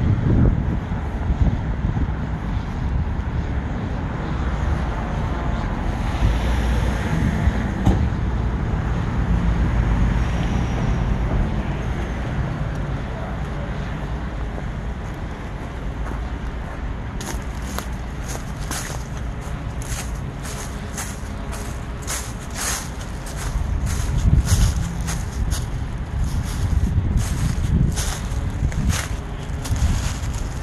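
Wind buffeting the microphone over distant traffic noise, and from about halfway through, rapid crunching and crackling of footsteps over dry grass and twigs.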